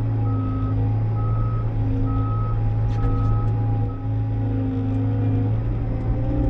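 Bobcat T66 compact track loader's backup alarm beeping about once a second as the machine reverses, over the steady drone of its diesel engine heard from inside the cab. The beeping stops about four seconds in.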